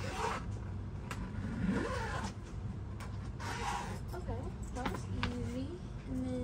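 A soft fabric suitcase being zipped and pressed shut, with a few short rasping zipper strokes and a brief vocal effort sound among them. Faint steady tones come in near the end.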